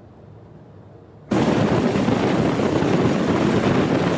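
Vehicles on the move: a steady, loud noise of engines and road and wind noise that starts suddenly about a second in, after a moment of quiet.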